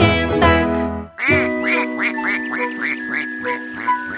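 Children's-song backing music finishes a phrase. Then, over a held chord, a cartoon duck's quack repeats about three times a second, some nine quacks.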